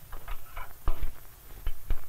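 A handful of irregular sharp clicks and knocks, about six in two seconds, over a faint low hum.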